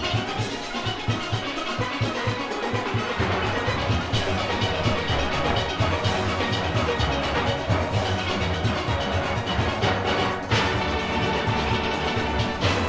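Full steel orchestra playing: massed steelpans over drum kit and percussion, with a regular beat. The low end fills out about three seconds in.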